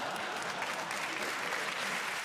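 Studio audience applauding after a joke.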